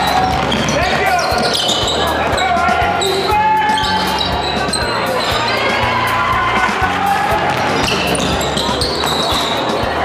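Game sound from a basketball gym: a ball bouncing on the hardwood floor in irregular knocks, with voices of players and spectators.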